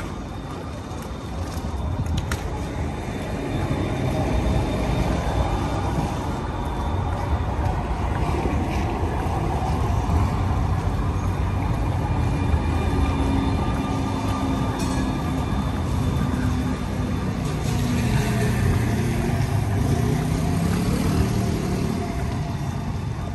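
A tram passing close by on a wet street amid steady traffic noise, with a humming tone that rises in pitch near the end.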